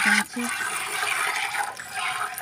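A cow being milked by hand: streams of milk squirting from the teats into a partly filled steel pail, a steady spraying sound.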